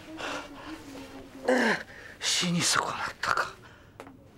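Breathy human vocal sounds: several short gasps and sighs, with a brief falling moan about one and a half seconds in.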